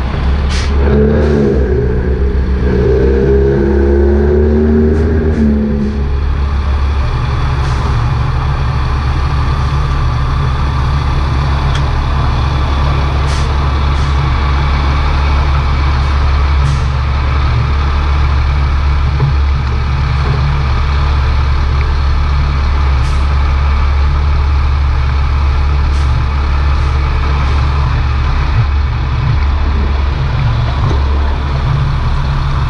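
Heavy diesel truck engines running steadily at low speed. A wavering engine tone sounds over the first several seconds, with brief hisses now and then.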